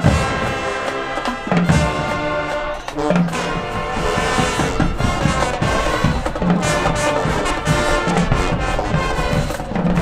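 High school marching band playing loudly: a brass section of trumpets and trombones over drum hits, with a short break in the playing near three seconds in.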